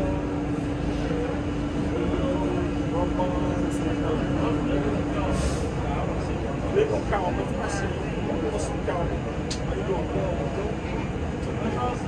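Steady rumble of a Budd R32 subway car heard from inside the car, with a steady hum that stops about five seconds in. Faint voices are mixed in.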